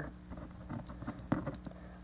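Light plastic clicks and scratchy rubbing from fingers working the parts of a small Transformers toy, unclipping its tabbed side pieces. There are a few faint ticks, the sharpest about a second and a third in.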